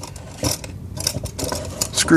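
Hand tools clicking and clattering as screwdrivers are rummaged through in search of the right one: a few short knocks and rattles.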